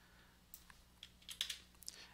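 About half a dozen faint, irregular clicks of a computer keyboard and mouse as a measurement is entered, over a low steady electrical hum.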